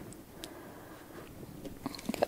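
Faint, wet, tacky sounds of hands handling sticky high-hydration sourdough, with a couple of small clicks in the first half-second.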